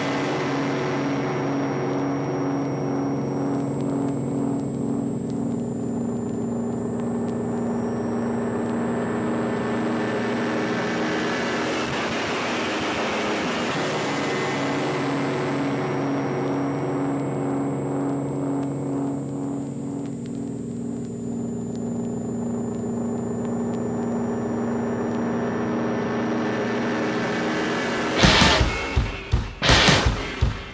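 Industrial-rock album drone: a chord of steady, buzzing low tones that starts suddenly and holds. A whooshing noise sweep rises to a peak about halfway through and then falls away.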